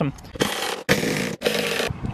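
Ratchet wrench with a 13 mm socket spun in three quick bursts of about half a second each, its pawl clicking too fast to separate: backing out a console-area bolt.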